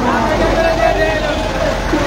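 Street hubbub: men's voices talking close by over the steady low running of a truck engine.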